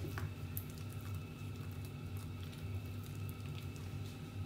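Spatula stirring a thick, doughy grated-tapioca and coconut mixture in a glass bowl: soft squishing and scraping, over a low steady hum.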